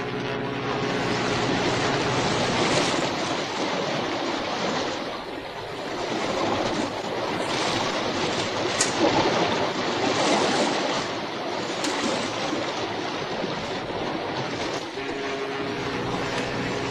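Steady rushing noise of waves, swelling and easing every few seconds, with one sharp click about nine seconds in.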